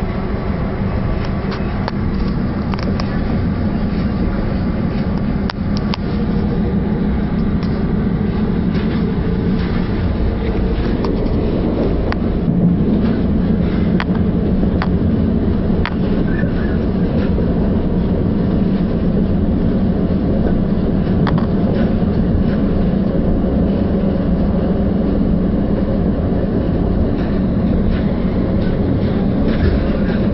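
Interior running noise of a Northern Rail Class 333 electric multiple unit at speed: a steady rumble of wheels on rail with a low hum and occasional faint clicks, growing a little louder from about halfway through.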